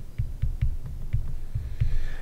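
Stylus writing on a tablet: a run of irregular low thuds, about four a second, with faint light clicks as the pen strokes land.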